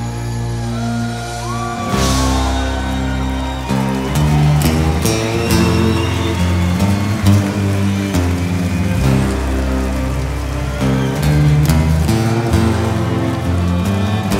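Live unplugged rock band playing an instrumental passage of a ballad, without singing: acoustic guitars over bass notes and percussion.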